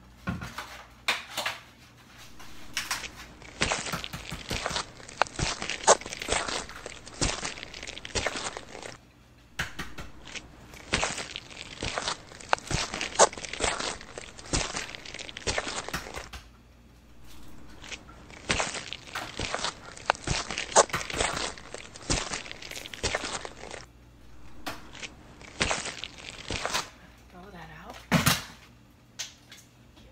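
Eggs being beaten with a fork in a bowl: fast clicking and tapping in runs of several seconds, with short pauses between the runs.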